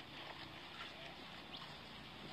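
Faint soft hoof steps and rustling of mares and foals moving about on dry dirt ground.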